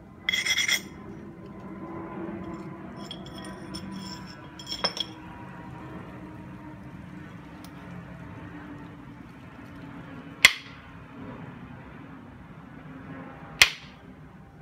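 Stone being flintknapped: a short, ringing, grating clink about half a second in and light scraping a few seconds later, then two sharp knocks about three seconds apart, the second near the end. The knocks are an antler billet striking the edge of a flint biface.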